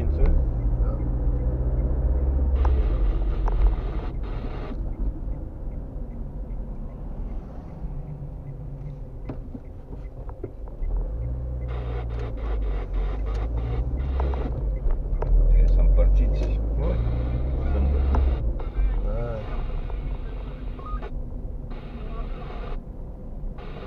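Car cabin noise while driving through town: a low engine and road rumble that grows louder and eases off as the car speeds up and slows, with faint talk in the background.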